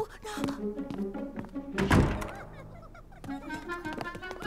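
A single heavy thud about halfway through, over light cartoon background music.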